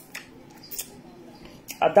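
Eating by hand with the mouth close to the microphone: a few brief soft clicks and smacks of chewing, then a voice starting to speak near the end.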